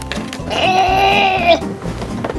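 A child's voice holding one long, slightly wavering sung note for about a second.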